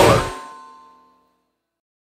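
The closing hit of a heavy metal band, cutting off sharply, with the last chord ringing out and fading away over about a second into silence: the end of the song.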